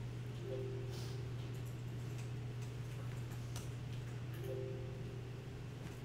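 Steady low hum with a few faint, scattered clicks of a computer mouse and keyboard as an item is selected and deleted.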